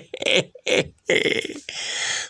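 A man's voice in a few short, broken bursts of speech, breathy and unclear.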